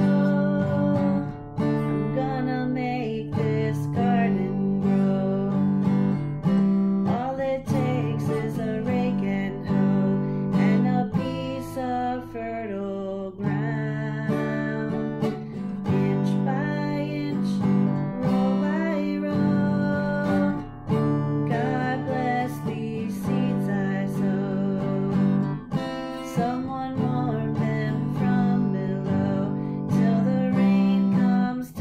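A woman singing a folk song, accompanying herself on a strummed acoustic guitar.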